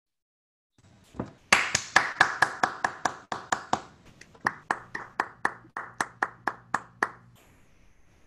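Applause from hands clapping: a run of sharp, separate claps, about four a second, starting about a second in, loudest early on and stopping shortly before the end.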